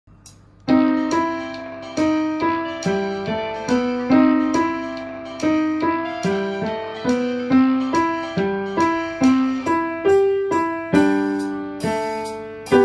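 Upright acoustic piano playing a Dixieland-style piece. Chords are struck in a steady rhythm, about two a second, and each one rings and fades; the playing starts under a second in.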